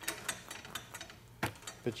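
Light clicks and taps from a VW shift rod and its coupler being moved on a bench mock-up, with one sharper knock about one and a half seconds in.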